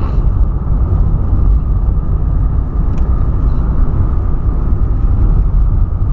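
Steady engine and road rumble heard inside the cabin of a moving Volkswagen Polo.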